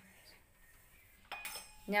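Metal clinking on a stainless-steel jar of grated coconut: a sharp tap at the start, then a louder ringing clink about a second and a half in.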